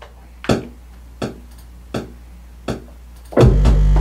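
Beat played on a pad sampler (drum machine): four sparse percussive hits, about one every 0.7 s, over a steady deep bass hum. A much louder bass-and-drum hit comes in about three and a half seconds in.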